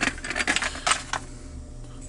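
A few sharp clicks and taps in the first second or so: a Stanley Security 24/7 padlock in its plastic-and-card retail packaging being handled and set down on the bench.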